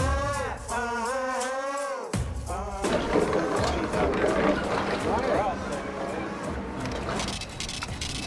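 Background music: a sung vocal over a steady beat, changing about three seconds in to a denser, noisier passage with voices mixed in.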